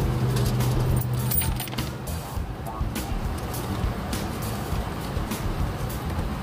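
Engine idling, a steady low rumble heard from inside the vehicle's cab, with a few light clicks and rattles from handling in the cabin.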